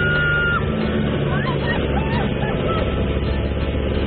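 Steady noise of a de Havilland Tiger Moth's Gipsy Major engine and rushing wind in the open cockpit during aerobatics. A woman's high, held scream runs until about half a second in, followed by a few short yelps.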